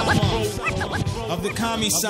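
Hip-hop beat with turntable scratching: a record worked back and forth under the needle, giving quick rising and falling squeals over a steady held chord.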